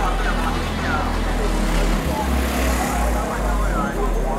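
Busy street crowd with scattered voices, over a low rumble and a motor scooter's engine running nearby for the first couple of seconds.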